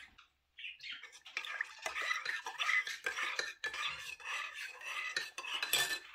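Metal spoon stirring coffee in a ceramic mug, clinking repeatedly against the sides for about five seconds, starting about a second in.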